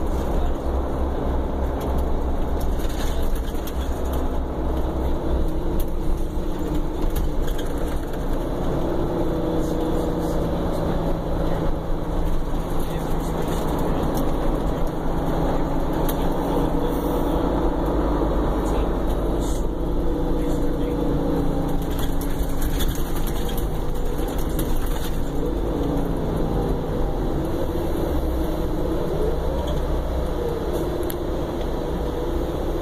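Cabin sound of a Prevost commuter coach under way: steady diesel engine and road rumble. The engine note rises and falls through much of the ride as the bus speeds up and slows.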